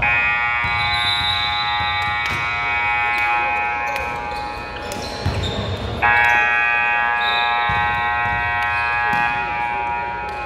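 Gym scoreboard buzzer sounding two long blasts: one for about four and a half seconds, then a second starting suddenly about six seconds in, as the game clock runs out.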